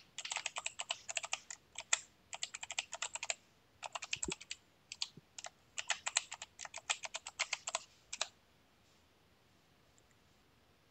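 Typing on a computer keyboard: quick runs of keystrokes with short pauses between them, stopping about eight seconds in.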